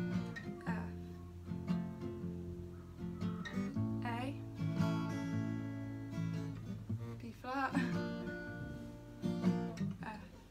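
Acoustic guitar playing the verse pattern: a single picked bass note, then up-down-up strums, moving from a barred B-flat chord to an A chord and then an F.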